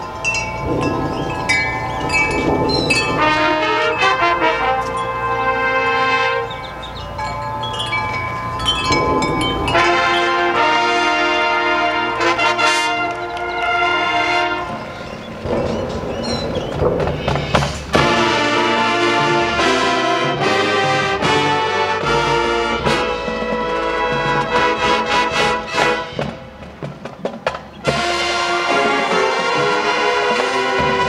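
High school marching band playing its field show: the brass and front-ensemble percussion play together, with ringing, bell-like keyboard tones. Sharp accented full-band hits come about 18 seconds in and again near the end, after a quieter, broken-up stretch.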